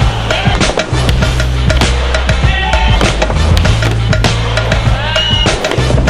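Skateboard rolling on a smooth concrete floor, with sharp clacks and knocks of the board and wheels. Music with a heavy bass line plays underneath.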